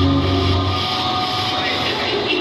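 Dance music with a heavy bass line playing over loudspeakers cuts out about a second in, leaving the steady murmur of a crowd of students talking in a large hall.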